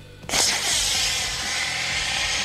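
Model rocket motor igniting with a sudden loud hiss about a third of a second in, then burning steadily as the rocket lifts off the pad.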